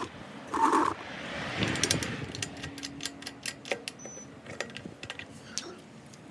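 Scattered light metallic clicks and clinks of lug nuts being spun onto a car wheel's studs by hand, with rubbing and handling noise close to the microphone.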